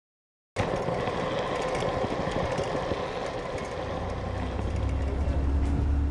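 Street traffic noise that starts abruptly as a video begins, with a double-decker bus's engine rumbling louder from about four seconds in as the bus approaches.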